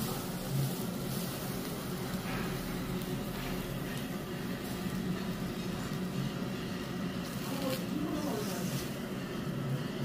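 A steady low rumble with faint, indistinct voices murmuring underneath.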